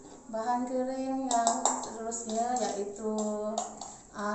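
A woman's voice with long, drawn-out held pitches, like singing, with a couple of light clicks about a second and a half in.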